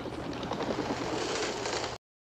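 Film soundtrack playing a dense rushing noise without clear tones, cut off suddenly at the end.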